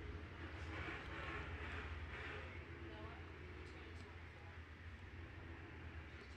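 Faint, steady rumble of a field of super late model dirt race cars on the track, lined up before the start, with faint crowd noise that swells slightly about a second in, picked up through the announcers' booth microphone.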